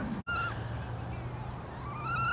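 Italian greyhound whining: a short high-pitched whine just after the start, then a longer, steady one beginning near the end.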